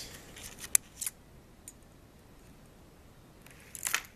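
Two sharp little clicks about a second in, then a brief rustle near the end, from small electronic parts and plastic packaging being handled on a tabletop.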